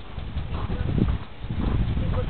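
Hoofbeats of a two-year-old Friesian–paint cross horse moving: irregular low thuds that grow louder about half a second in.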